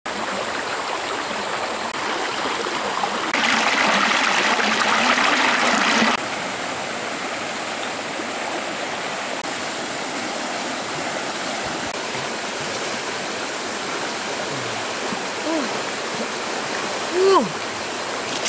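Fast-flowing river rushing over shallow rapids, a steady roar of water; it runs louder for about three seconds from about three seconds in, then drops back suddenly. Near the end a person makes two short rising-and-falling vocal sounds.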